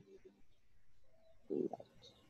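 Faint background hiss of a video-call line, broken about one and a half seconds in by a short murmured vocal sound, a brief hesitant 'mm' or 'uh'.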